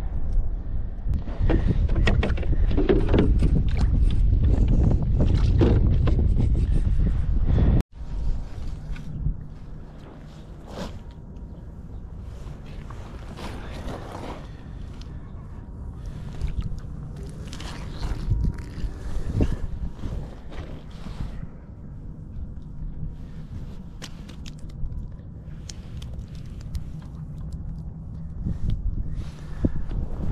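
Wind buffeting the microphone for the first eight seconds, then after a sudden cut, a quieter stretch of rustling and scattered light clicks from hands working at an ice-fishing hole.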